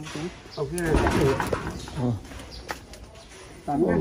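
A man's voice in short, indistinct spoken phrases.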